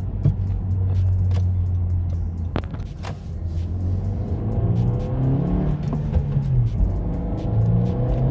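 A 660,000-mile 2017 Honda Civic's 1.5-litre turbocharged four-cylinder engine, heard from inside the cabin. It runs low and steady, then from about four seconds in pulls under full throttle, its note rising in pitch, dropping and rising again. It is being floored to clean out the fuel injectors.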